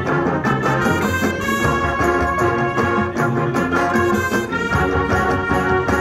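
Marching band playing, with held chords over a steady drum beat.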